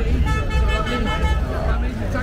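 A vehicle horn sounds once, a steady tone held for just over a second, starting a moment in, over street chatter and traffic rumble.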